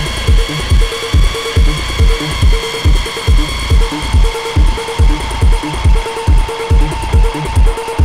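Live electronic dance music played on hardware synthesizers and drum machines: a steady kick drum about two beats a second under held synth tones. A new mid-pitched synth tone comes in about halfway.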